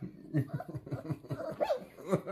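A four-week-old Labrador retriever puppy gives a short whimper, over a person's soft, rapid chuckling.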